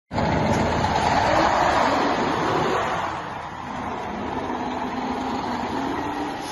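Diesel engine of an International ProStar day-cab tractor running as the truck pulls away across gravel. It is loudest for the first three seconds, then a little lower.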